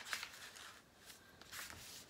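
A folded sheet of paper being pressed and creased flat by hand: faint rustling and brushing of paper, with a couple of light taps near the start.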